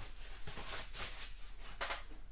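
Hard plastic PSA graded-card slabs being handled and stacked: faint clicks and rustling, with one slightly louder scrape near the end.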